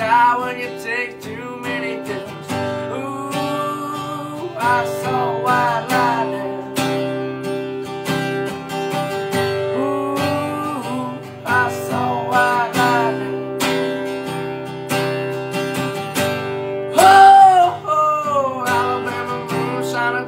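A man singing over his own strummed acoustic guitar, the chords keeping a steady strumming rhythm, with a loud held sung note about three-quarters of the way through.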